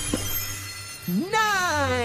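A sparkly cartoon shimmer effect fades out. About a second in, a cartoon voice sings one long note that rises and then slowly falls, marking the numeral nine popping up.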